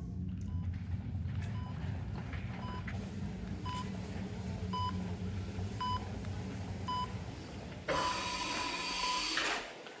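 Hospital heart monitor beeping steadily, about one beep a second, seven in all, over a low hum. About eight seconds in the beeps give way to a continuous tone at the same pitch with a hiss for nearly two seconds, which then cuts off.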